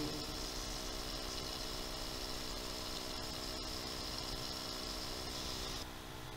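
Steady background hiss with a faint hum, the noise floor of the recording in a pause between recited verses. Just before the end the hiss changes and goes duller, at a splice between two recordings.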